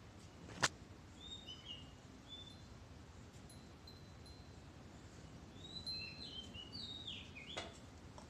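Short, high chirps from small birds, scattered at first and coming thicker in the second half, over faint background noise. A single sharp click about two-thirds of a second in is the loudest sound, with a smaller one near the end.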